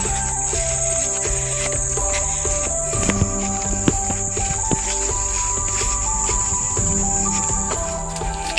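A steady high-pitched insect drone from crickets or similar insects in tall grass, with background music of held notes that change every second or so.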